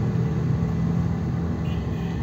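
A car's engine and road noise heard from inside the cabin while driving, a steady low drone.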